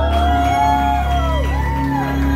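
Electronic music played live from a DJ controller through a venue's sound system: a heavy, sustained bass under synth notes that bend up and fall back down in pitch, over a repeating pulsing mid note.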